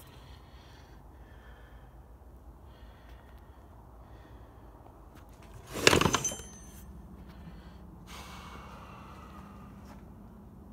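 Handling noise: a single brief metallic clank or clatter about six seconds in, ringing for a moment, then a softer rustle a couple of seconds later.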